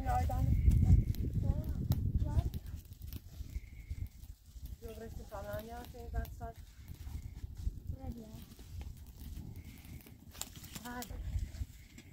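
Sheep or goats bleating: four quavering, wavering calls, one at the start, one about five seconds in, a short one near eight seconds and one near eleven seconds. A loud low rumbling noise fills the first two seconds or so.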